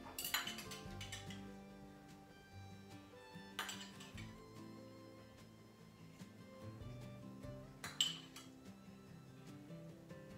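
Soft background music with a steady melody, with a few light clinks of a metal utensil against a small ceramic dish as mayonnaise is scooped and spread, the sharpest clink near the end.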